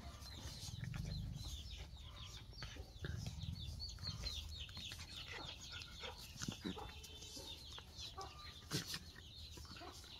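Chickens clucking, with a rapid run of short, high, falling chirps, and a single sharp knock near the end.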